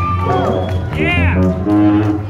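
Electric bass guitar solo played live through an amplifier: a quick run of changing notes with pitch glides.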